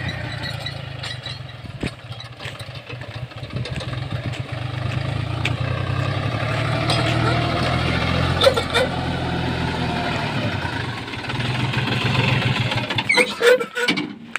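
New Holland Excel 4710 tractor's diesel engine running steadily under load, driving a Shaktimaan rotavator through the soil. It grows louder near the end.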